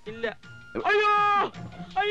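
A man's high-pitched, drawn-out cry, held for most of a second and falling off at its end, with a shorter vocal sound just before it and another long cry beginning right at the close.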